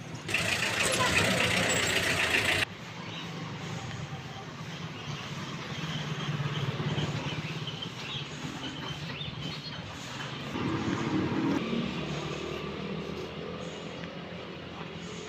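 A passenger jeepney drives past close by, its engine loud for about two seconds before the sound cuts off abruptly. After that comes a lower, steady engine hum of street traffic.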